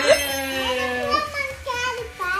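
Children's voices exclaiming and chattering excitedly, without clear words.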